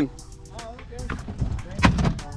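A single sharp thump near the end, over faint voices.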